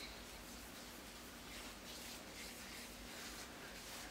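Faint soft rubbing of fingertips spreading a cream primer over facial skin, in several light strokes over a low steady room hum.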